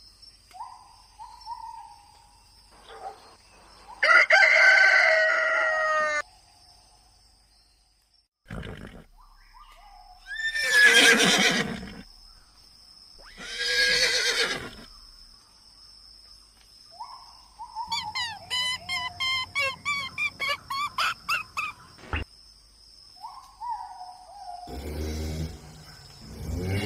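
A series of separate farm-animal calls, including a horse whinnying and a rooster crowing, with a fast run of short repeated calls in the second half. A brief gliding tone comes before several of the calls, and a steady faint high tone runs underneath.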